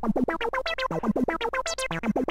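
FXpansion Strobe2 virtual analogue synthesizer playing a fast arpeggiated pattern of short notes, about ten a second, each starting with a quick falling chirp. The step sequencer modulates the filter cutoff, and the notes grow brighter as the modulation depth is turned up.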